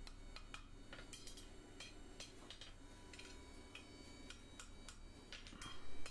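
Faint, irregular light taps of a wooden mallet on a hot iron bar on the anvil, gentle blows that move the scroll's shape without marking or thinning the metal.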